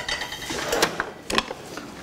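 Frying pan set back on a gas range and the burner turned on: a fading metallic ring from the pan, then a few sharp clicks in pairs from the stove.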